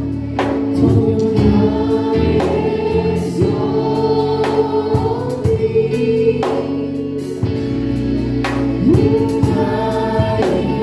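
Gospel music: a choir singing held notes over instrumental backing with percussion hits.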